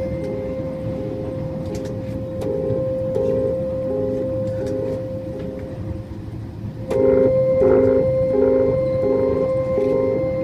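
Small keyboard instrument played with one high note held as a drone over a repeated chord figure about once a second. About seven seconds in, the playing gets louder and the figure quickens. A train's low running rumble sits underneath.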